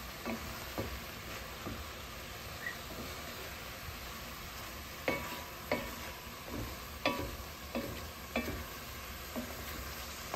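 Chicken and the Cajun 'holy trinity' (onion, celery, bell pepper) with garlic sizzling in a metal pot as they sauté down soft. A wooden spoon stirs them, and in the second half its strokes knock and scrape against the pot about every two-thirds of a second.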